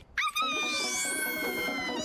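Cartoon soundtrack: one long held cry, animal-like and falling slightly in pitch, over background music, with a rising whoosh sweep behind it.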